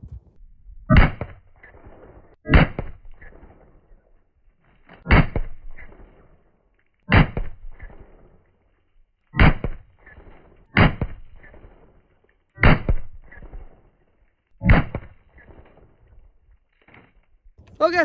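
Eight single shots from an AR-15 pistol, fired one at a time about every one and a half to two and a half seconds. Each shot has a short fading tail as the bullet bursts a plastic water bottle.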